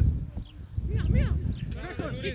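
Footballers shouting to each other during a training match, short calls that rise and fall in pitch, over a steady low rumble.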